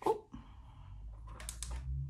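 Paper cash envelope and leather ring binder being handled: a sharp click at the start, soft paper rustle, then a few light clicks and taps about halfway through.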